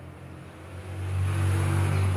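Low, steady rumble of a motor vehicle's engine, growing louder from about a second in.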